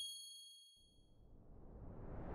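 Logo sound effect: a bright, bell-like ding ringing out and fading away, then a whoosh swelling up near the end.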